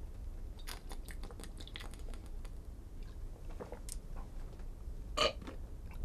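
Quiet room with a few faint, scattered clicks and small noises, then a short spoken "uh" near the end.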